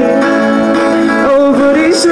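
Live rock band playing, with strummed acoustic and electric guitars over drums.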